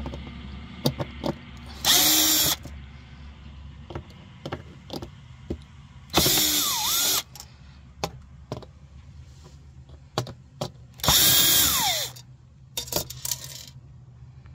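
Cordless drill-driver with a Phillips bit backing out the screws of a sheet-metal fuel pump access cover. The motor runs in three short bursts about four seconds apart, and its whine bends in pitch. Small clicks and taps come between the bursts.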